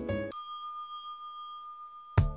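Elevator-style music cuts off about a third of a second in, and a single elevator bell ding sounds and rings out, fading slowly for well over a second. This is the Elevator.js arrival chime, marking that the page has scrolled back to the top.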